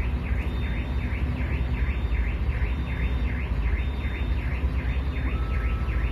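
Truck's diesel engine running at low revs, a steady low rumble heard from inside the cab, with a faint chirp repeating about twice a second above it.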